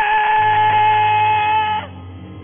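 A man singing one long, high, held note into a microphone in a gospel song, with a low sustained keyboard note under it. The note cuts off near the end.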